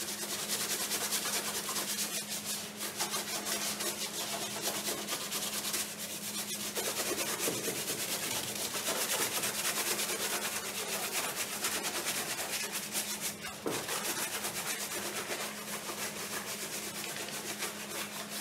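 A gloved hand rubbing hard over the surface of a painted panel in quick back-and-forth strokes, a dense continuous scraping, with short breaks about six seconds in and near fourteen seconds. A faint steady hum runs underneath.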